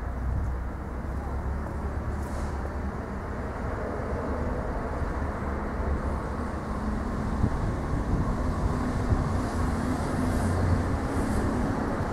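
Steady low rumble of road traffic, with an engine hum growing louder in the second half.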